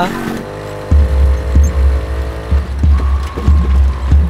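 Film background score: a heavy, deep pulsing bass beat comes in about a second in, over a held synth tone.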